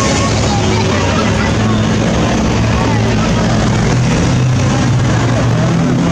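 A motor vehicle's engine running close by with a steady low hum, under indistinct voices of people in the street.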